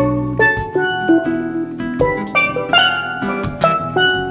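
Steel pan playing a melody of quick struck notes that ring on, with guitar accompaniment and a low bass line underneath, in a live jazz-calypso instrumental.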